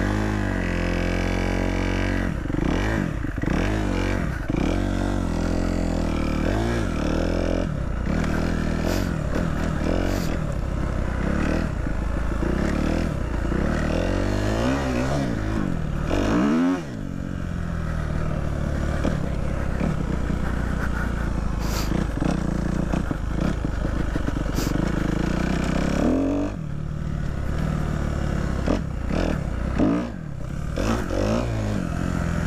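Dirt bike engine revving up and down as it is ridden over rough ground, with rattles and knocks from the bike bouncing. The revs drop sharply about 17 seconds in and again near 26 seconds, then climb again.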